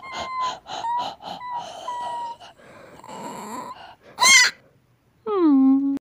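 Dog-like panting, voiced by a person, with a thin whine over it, then a single loud sharp yelp about four seconds in and a short voiced groan that drops in pitch and holds near the end.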